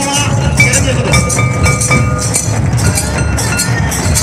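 Tribal dance music played live on barrel-shaped hand drums beaten in a fast, steady rhythm, with a high held melody line stepping between a few pitches and some metallic clinking.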